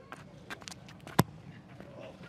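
Quiet football-pitch sound with a few sharp knocks, the loudest about a second in.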